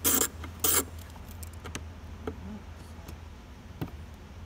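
Socket ratchet working a 7 mm bolt loose: two short bursts of ratchet clicking in the first second, then a few single light clicks.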